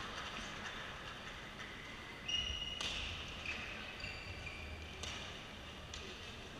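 Badminton-hall sounds: a few short, high squeaks of court shoes on the floor, the loudest about two and a half seconds in, and a couple of sharp knocks, over the low hum of a large sports hall.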